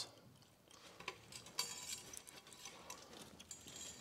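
Faint ticks, light clinks and scratching of a thin steel wire line being handled and wound around a metal wall mount.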